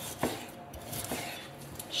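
Chef's knife cutting pork neck on a wooden cutting board: one sharp knock of the blade on the board shortly after the start, then a few softer taps.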